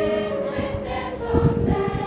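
Middle school choir singing long held notes with electric keyboard accompaniment. A brief low rumble cuts in about a second and a half in.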